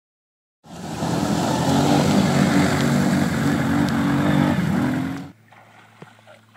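A loud engine running hard at high revs, starting abruptly about half a second in and cutting off suddenly after about five seconds.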